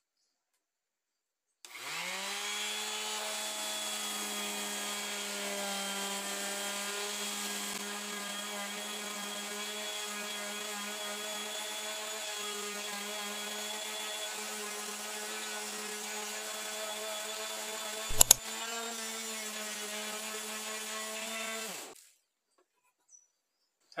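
Multilaser 240 W electric orbital sander switched on about two seconds in, spinning up and then running with a steady hum as it sands a rough wooden board. It is switched off and winds down near the end. A single sharp knock, the loudest sound here, comes about two-thirds of the way through.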